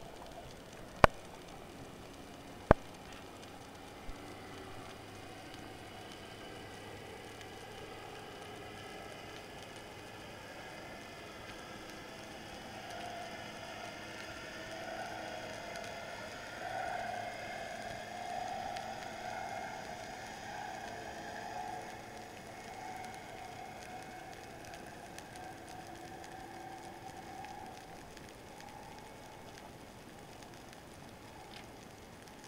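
Underwater sound picked up by a diver's camera at depth: a faint steady crackling hiss, two sharp clicks in the first three seconds, and a wavering hum that swells in the middle and fades near the end.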